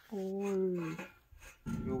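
A person's drawn-out vocal 'oh', held for about a second with its pitch sinking slightly. After a brief quiet gap comes a low rumbling noise near the end.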